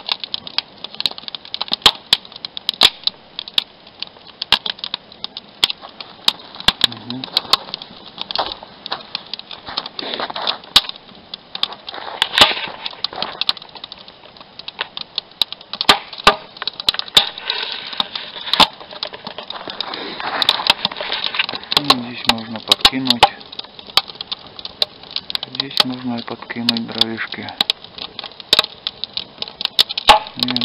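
Wood fire crackling with many irregular sharp pops as it catches in a brazier made from a 200-litre steel water-heater barrel. A man's voice murmurs briefly a few times.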